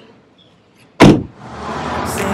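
An edited-in whoosh transition effect about a second in, a loud sudden swoosh that sweeps downward and dies away within half a second. Music with singing then fades in and grows louder.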